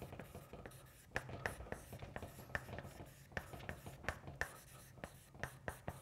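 Chalk writing on a blackboard: a run of short, irregular taps and scratches as letters are written.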